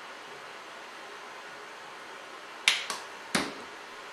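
Quiet room tone, then three short, sharp plastic clicks a little past halfway, the first two close together: a cosmetic peeling-gel container being opened and handled.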